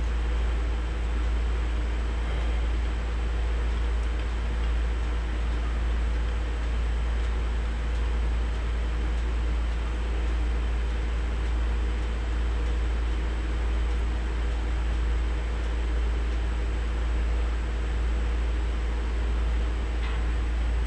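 Steady mechanical hum and rush with a deep rumble and a few held tones, unchanging throughout.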